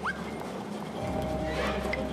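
Cartoon soundtrack: a short rising squeak at the start, then a steady held music tone over a low hum from about a second in.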